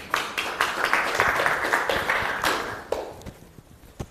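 Applause from a small audience: many hands clapping, dying away about three seconds in.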